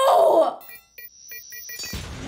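Movie sound effects: a loud held tone breaks off in the first half-second. A pumpkin bomb then beeps rapidly, about five short high beeps a second, before an explosion bursts in near the end.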